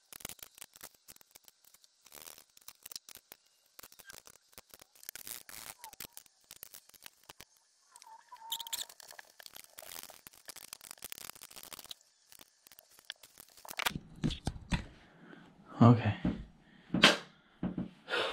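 Handling noise from assembling a futon: a dense run of small clicks, taps and rustles as metal legs are screwed onto the frame, with louder thumps near the end.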